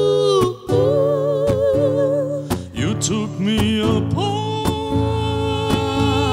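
Live acoustic pop song: a woman's voice holding long notes with vibrato over a strummed acoustic guitar, with a second, lower voice gliding in partway through.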